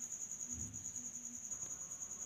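Cricket chirping: a high, rapid, evenly pulsing trill that keeps going steadily.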